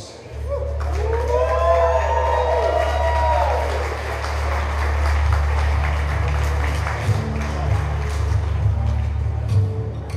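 A slow song's intro begins with a sustained low bass note, while the crowd cheers and whoops for the first few seconds, with some applause, before the music carries on alone.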